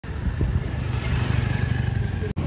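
Motorcycle engine running steadily with a low, even rumble.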